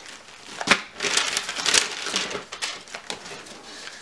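Plastic food packaging crinkling and rustling as it is handled at a box, with one sharp knock just under a second in and irregular crackles after it.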